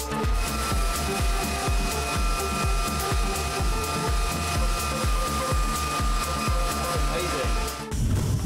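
Floor sander running with its cyclone dust collector, a steady motor whine over a rush of air that cuts off suddenly just before the end.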